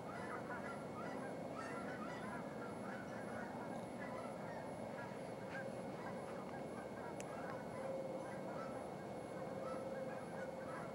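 A continuous chorus of many distant bird calls from a flock, overlapping with no break, over a steady background hum.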